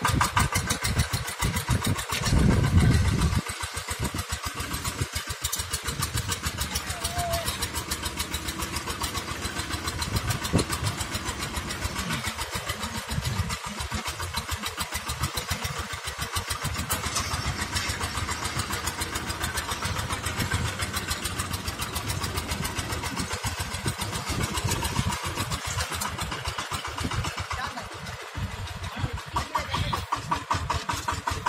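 VST Shakti power tiller's single-cylinder diesel engine running with a rapid, even chugging beat while the tiller drags a rake attachment through loose soil. It is briefly louder a few seconds in.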